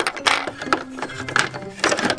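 Irregular clicks and knocks of hand-moved plastic toy figures against a plastic playset and tabletop, about half a dozen in two seconds, over light background music.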